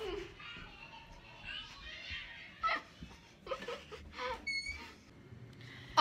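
Faint, indistinct talking and giggling from girls, low in level, with a brief high squeak partway through.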